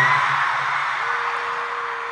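Arena crowd of fans screaming and cheering, loudest at the start and slowly fading, with one held high note standing out from the noise about halfway through.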